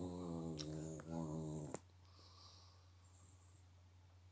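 A dog growling low and steadily, two growls back to back that stop short a little under two seconds in, while the dogs bicker.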